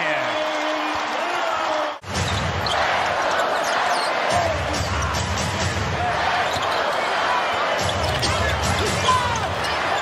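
Arena crowd noise at an NBA game, with a basketball being dribbled on the hardwood court. A hard edit about two seconds in breaks the sound off for an instant before a new stretch of crowd noise and dribbling.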